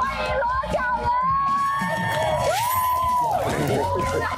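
Several people cheering and whooping in long, high, rising-and-falling voices, over background music.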